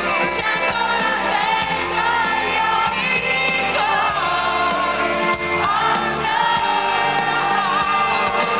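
Live pop-rock song: a woman singing lead into a handheld microphone over a full band, with a guitar coming forward near the end. The sound is dull and muffled, lacking all high treble.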